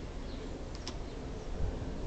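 Quiet outdoor background: a steady low rumble with a couple of faint high ticks or chirps a little under a second in.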